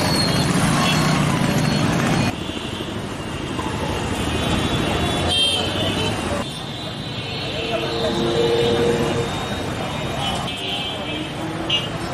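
Busy town street ambience: motor traffic with a motorcycle passing close at the start, short horn toots, and people talking in the background. The background changes abruptly a few times.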